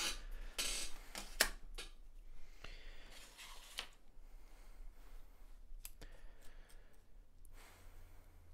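Scattered light clicks and rustling of small tools being handled: a drill bit being taken from its plastic packet and a hand pin vice being worked to change the bit.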